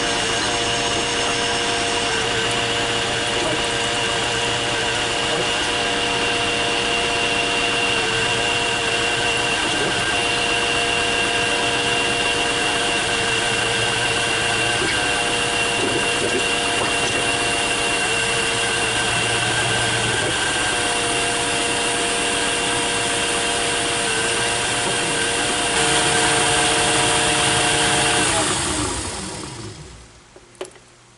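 Metal lathe running under power while a tailstock drill bit cuts into the spinning workpiece, a steady motor-and-gear whine. Near the end the lathe is switched off and spins down, the whine falling in pitch until it stops.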